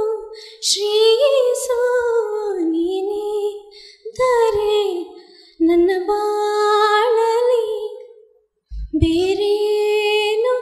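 A young woman singing solo into a handheld microphone, unaccompanied, in long gliding phrases with short breaks for breath. During a brief pause near the end there is a soft low thump on the microphone.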